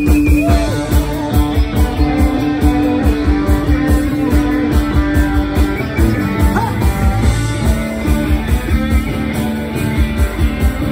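Live garage rock band playing an instrumental stretch with electric guitars over a fast, steady drum beat. A long held note rings for about the first six seconds before dropping away.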